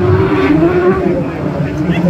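Autograss special racing car passing close by on the dirt track, its engine note rising in pitch as it goes past.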